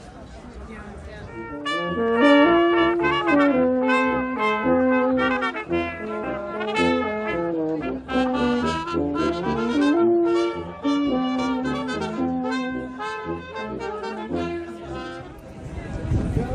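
Live street brass, including a tuba, playing a tune of held notes; it starts about two seconds in and fades near the end as the players are passed.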